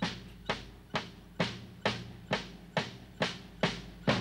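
Suspense drum beat in the music score: single drum strikes evenly spaced at about two a second, each dying away before the next, held while the winner's name is awaited.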